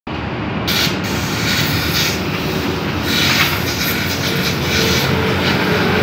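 Steady mechanical running with a rushing hiss, as air or cleaning fluid is forced from a hose nozzle into a clogged catalytic converter's inlet. The hiss surges briefly about a second in and again about three seconds in.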